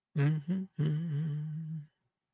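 A man humming at the microphone in three short phrases, the last held for about a second with a gently wavering pitch.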